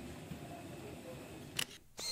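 Steady low background hum of people walking down an airport jet bridge, then near the end a sharp click and a short, bright ringing burst: a camera-shutter sound effect, after which the sound cuts off abruptly.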